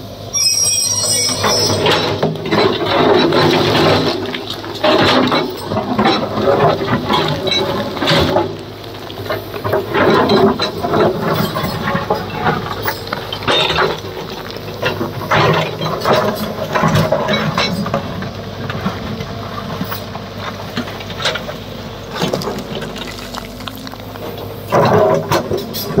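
A tracked JCB excavator's diesel engine runs steadily under load while its steel bucket scrapes and knocks against rock, with stones clattering and tumbling down in irregular bursts throughout.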